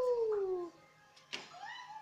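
A drawn-out voice sliding down in pitch for nearly a second, then a sharp click.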